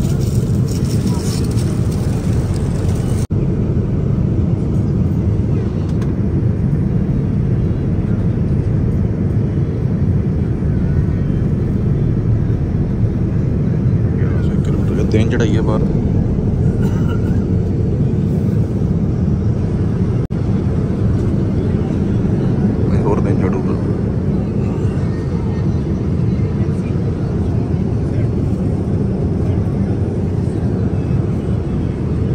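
Steady, deep cabin noise of a Boeing 787 airliner in cruise flight: even engine and airflow rush heard from a passenger seat, with faint voices in the cabin now and then.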